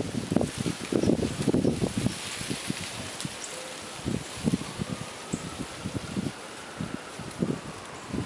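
Gusty wind buffeting the microphone with rustling, in irregular rumbling gusts that are strongest in the first two seconds and then settle to a steadier rush.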